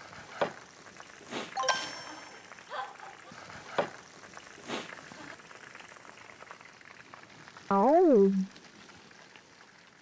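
A few light clicks and taps of knife and utensils on plates and a wooden cutting board. About eight seconds in comes a short, loud pitched sound that rises and then falls.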